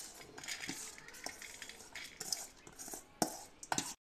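A steel spoon scraping and clinking against a steel bowl as washed urad and chana dal is scraped out into an aluminium pressure cooker, with a couple of sharp clicks near the end.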